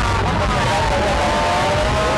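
A loud, steady mix of voices and background music, over a low hum.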